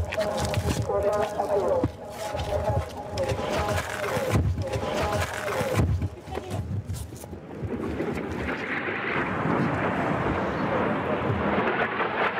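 Rocket-alert warning with people's voices and hurried footsteps as they rush to take cover; from about seven and a half seconds a steady rushing noise takes over.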